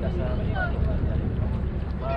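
Small wooden motorboat underway, its engine running steadily, with wind rumbling on the microphone.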